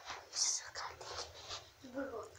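A person whispering softly close to the microphone, with a brief voiced sound near the end.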